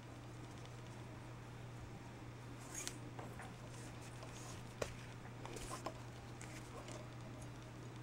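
Black nylon paracord being handled and pulled through a cobra weave: faint rustling of cord against fingers, with a few small clicks about three, five and six seconds in, over a steady low electrical hum.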